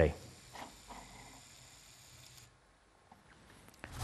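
Faint room tone with a few soft ticks after a spoken word ends. About two and a half seconds in, the background hiss cuts out, leaving near silence until a loud sound starts right at the end.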